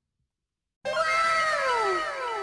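Intro sound effect: after a silent start, a pitched sound comes in suddenly about a second in and glides downward in pitch, trailed by echoing repeats of the same falling glide.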